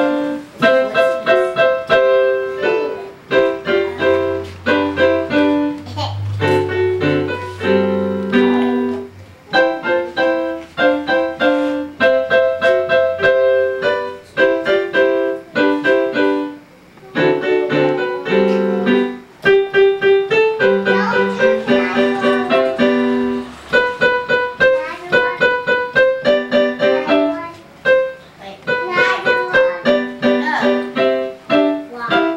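A child playing a piece on an electronic keyboard in a piano voice: a quick, steady run of single notes and chords, with a low note held underneath for a few seconds and a brief pause about halfway through.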